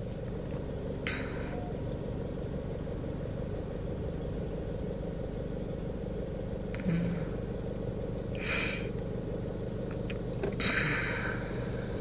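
Car engine idling, heard from inside the cabin as a steady low hum, with a few brief soft noises about a second in, at around seven and eight and a half seconds, and near the end.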